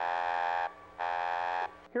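Electronic warning buzzer sounding twice. Each buzz is a flat, steady tone lasting about two-thirds of a second, with a short gap between them.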